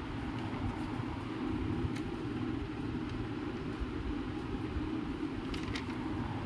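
Steady low background rumble with a few faint clicks, about two seconds in and near the end.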